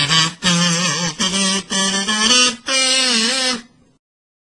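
Wooden kazoo playing a short tune: a run of separate buzzy notes, the last one held longer with a wavering pitch, then cut off abruptly near the end.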